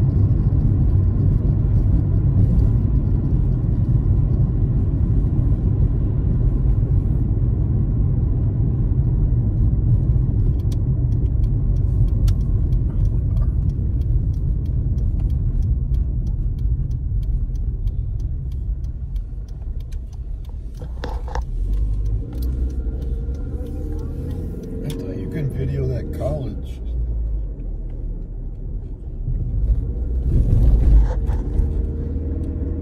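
Steady low road rumble of a car heard from inside the cabin, easing somewhat past the middle as the car slows. There is a run of faint quick ticks in the middle, and an unclear voice murmurs for a few seconds late on.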